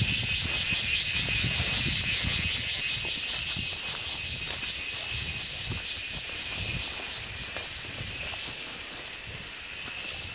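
A steady high-pitched shrill hiss over an uneven low rumble, both easing a little toward the end.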